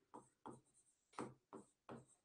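Marker pen writing on a whiteboard: about five short, faint strokes.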